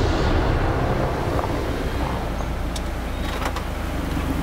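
White Honda Accord sedan driving slowly along a road: a steady low engine and tyre rumble that eases slightly as it goes.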